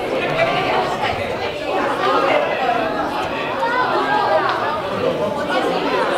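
Indistinct chatter of several overlapping voices, reverberating in a large room.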